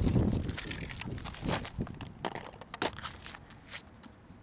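Camera handling noise: fabric rubbing against the microphone and a string of irregular knocks and scrapes, fading as the camera is set down on the concrete.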